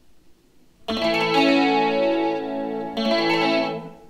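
Guitar playing slow jazz chords: a chord is struck about a second in and rings, and a second chord is struck about three seconds in and fades away near the end.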